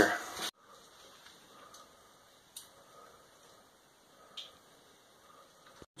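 Near silence after a man's voice trails off in the first half second: only faint room tone, with two faint clicks.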